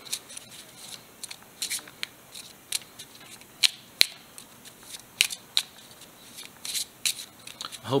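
Pokémon trading cards being shuffled by hand, passed from one hand to the other. It comes as irregular flicks and slaps of card stock, loudest in two sharp snaps about halfway through.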